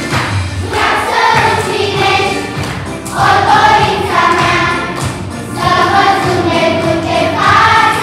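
A children's choir singing a song together in sustained phrases, with short breaths between phrases.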